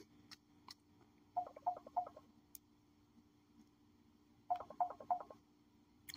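Faint telephone call tone: a quick run of three short beeps, repeated about three seconds later, as an incoming call comes through on the line.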